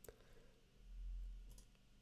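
Computer mouse clicking against near silence: one sharp click at the start and a fainter one about a second and a half in, with a brief low rumble between them.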